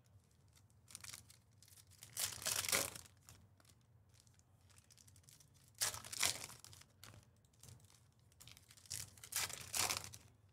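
Trading-card pack wrappers being torn open and crinkled, in three short bursts: about two seconds in, about six seconds in, and near the end.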